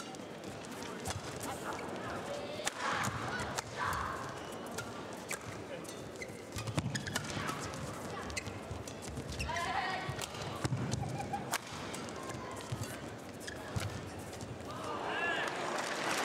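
Badminton rally: rackets striking a shuttlecock with sharp cracks at irregular intervals, and court shoes squeaking on the floor as the players move.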